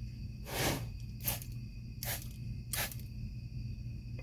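Spray bottle spritzing 5% salt water onto knife blades: four short hissing sprays about a second apart, the first the longest and loudest.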